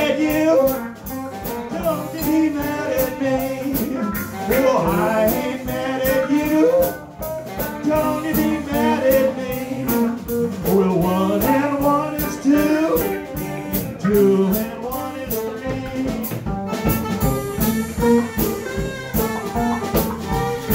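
Live blues band playing, with electric guitar and a drum kit keeping a steady beat and a wavering lead line over the top.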